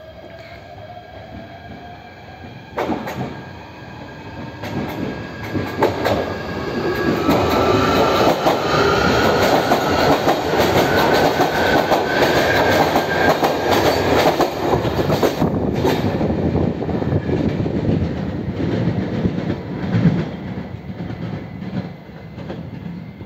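Electric limited express train pulling away and running past close by: a motor whine rising in pitch over wheel-on-rail rumble and clicking rail joints. It is loudest as the cars pass, from about eight seconds in, then eases off. There is a single sharp knock about three seconds in.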